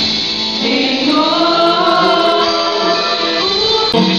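Live gospel worship music: several singers on microphones sing long held notes together, backed by a band with electric guitars, amplified over the church's sound system.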